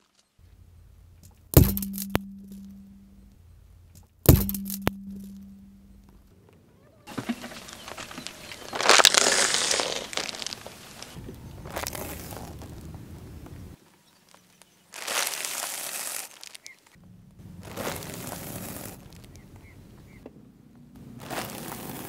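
Car tyre crushing things on asphalt: two sharp cracks about two and four seconds in, each with a short low ring after it, then a long crinkling crunch as a foil snack packet is flattened, loudest around nine seconds, followed by three shorter crushing bursts.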